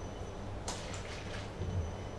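Low steady room hum with a brief soft rustle about a third of the way in, as a plastic bottle is handled and lifted.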